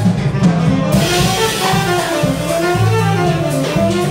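Small live jazz combo: a saxophone melody over plucked upright bass and a drum kit. The drummer's cymbals come in louder about a second in.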